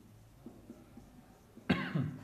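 A man coughs twice quickly near the end. Before that there are faint ticks of a marker writing on a whiteboard.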